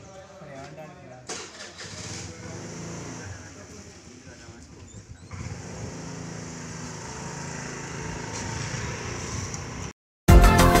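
Indistinct voices in the first second, then a steady engine hum that grows slowly louder.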